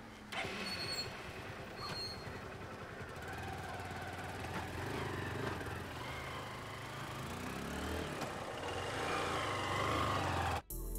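Motorcycle engine running as the bike pulls away, growing gradually louder toward the end, with street traffic around it.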